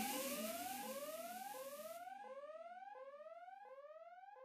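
Closing fade-out of an electronic dance track: a synth tone that glides upward and snaps back down, repeating about every 0.7 s, fading steadily. A high hiss under it dies away about halfway through.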